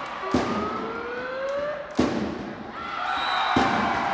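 Volleyball rally in an arena: two sharp smacks of hands striking the ball, about a second and a half apart, over crowd noise. Sustained tones rising in pitch run through the first half, and steady tones follow as the rally ends.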